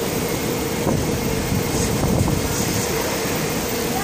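SMRT C151B metro train standing at the platform with its doors open, its onboard equipment giving a steady hum with a constant mid-pitched tone.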